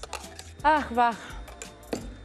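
A metal spoon clinking lightly against a stainless steel jug as raspberry sauce is stirred: a few scattered sharp clicks. Background music runs underneath, with a brief stretch of voice in the middle.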